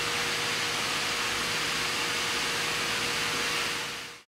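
Steady rushing background noise with a faint steady hum in an underground mine tunnel, fading out near the end.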